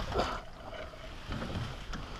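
Water splashing and sloshing as a hooked pike is lifted out of the water over the side of a small boat, with handling noise, loudest in the first half-second and then a quieter wash.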